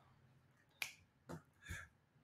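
Near silence between talk, broken by three faint, short clicks: a sharp one just under a second in, then two softer ones about half a second apart.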